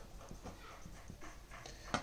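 A pen writing on paper: faint, soft strokes as a word is written out.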